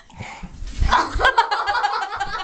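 A boy coughing and gagging in rough, repeated bursts after swallowing dry cinnamon, which catches in the throat. The coughing starts faintly and becomes loud about a second in.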